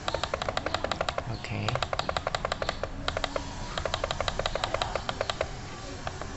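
Computer mouse clicking rapidly and repeatedly, in three quick runs with short pauses between them.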